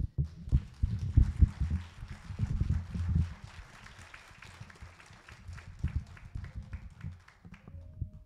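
Irregular low thumps and knocks mixed with a light patter of clicks and rustling, fading out near the end, where a steady held musical note begins.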